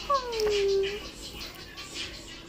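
A tabby cat gives one meow of about a second, falling in pitch.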